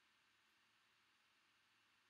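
Near silence: a pause with only a faint hiss.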